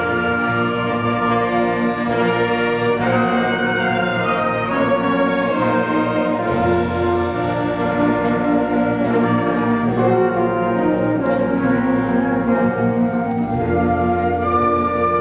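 School concert band of clarinets, flutes and other winds playing a full passage of sustained chords at a steady loudness.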